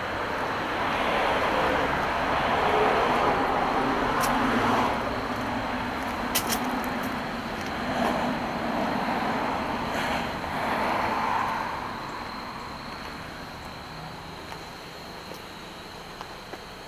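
Road traffic: cars driving past on the road, several passes swelling and fading, the loudest in the first five seconds and the last around eleven seconds, after which it drops to a lower steady hum. A few short clicks occur along the way.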